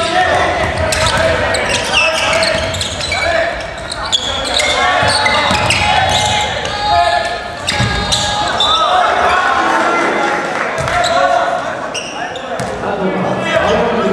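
Live basketball game sound in a large gymnasium: the ball bouncing on the hardwood floor amid overlapping shouts and voices from players and benches, with the echo of the hall.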